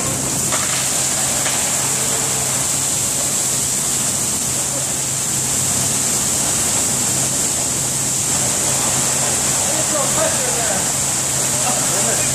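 Water spraying under pressure from a burst overhead pipe, making a steady, loud hiss with a low hum beneath it. Faint voices come in near the end.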